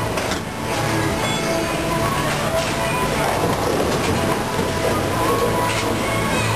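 Steady bowling alley din: balls rolling along the wooden lanes, with background music and voices over it.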